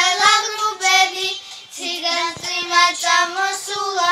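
Two young girls singing a song together, holding long notes, with a short break in the melody about one and a half seconds in.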